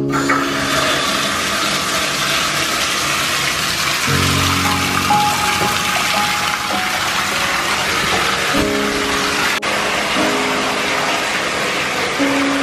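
Water from a bathtub tap running into the tub, a steady rushing splash that starts abruptly as the lever is turned on. Soft piano music plays over it.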